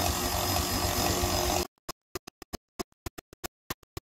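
KitchenAid stand mixer running with its shredder attachment grating a bar of soap into a bowl, a steady motor hum with the shreds falling. Under two seconds in it cuts off abruptly and sparse sharp clicks of electronic music follow.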